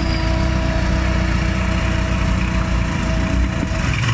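Engine of a Locust skid-steer loader running steadily while the machine drives with its bucket lowered.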